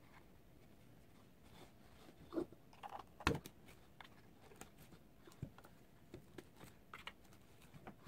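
Scattered soft taps and rustles of hands handling a plastic doll's head and its synthetic hair on a plastic stand. The loudest tap comes a little over three seconds in.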